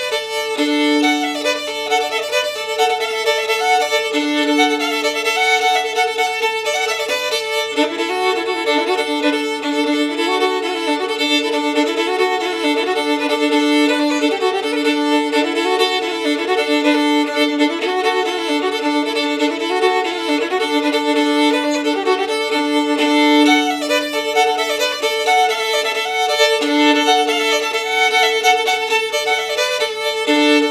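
Solo fiddle playing a crooked old-time Kentucky tune in DGAD cross-tuning, bowed steadily, with an open string droning one note under the moving melody.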